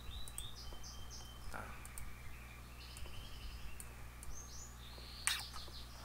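A bird chirping in the background, with quick runs of short, high chirps at the start and again near the end. A low steady hum lies underneath.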